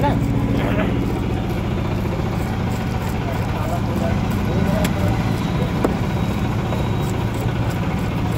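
A vehicle engine idling steadily close by, a low even hum throughout. Faint voices come near the start, and there are a couple of sharp knocks about five and six seconds in.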